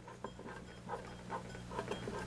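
Low steady hum from the powered-up CB radio and VFO, with a few faint small clicks and rubs as the VFO's large tuning dial is turned by hand.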